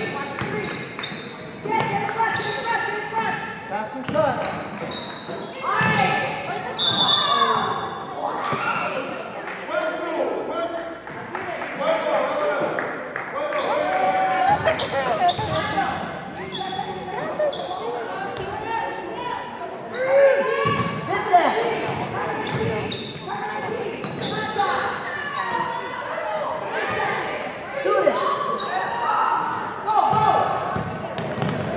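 Basketball being dribbled on a hardwood gym floor, with voices of players and spectators calling out, all echoing in a large gym.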